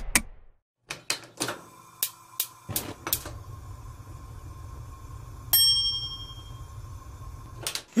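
Sound effects of an animated logo intro: a quick run of sharp clicks in the first few seconds, then a low hum under a single ringing ding about halfway through that dies away, and two more clicks near the end.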